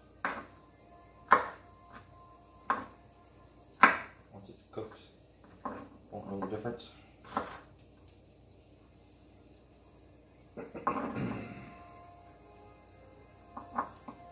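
Chef's knife cutting celery on a wooden cutting board: sharp, irregular knocks of the blade striking the board, about one a second, pausing for a few seconds and then coming twice more near the end. About eleven seconds in there is a longer, duller sound.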